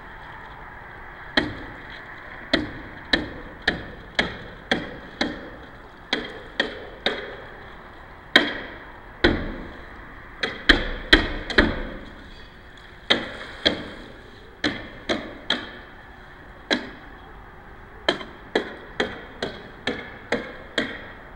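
A long series of sharp knocks, coming irregularly one to three a second, each with a short ringing tail. The loudest knocks bunch together around the middle, over a faint steady hiss.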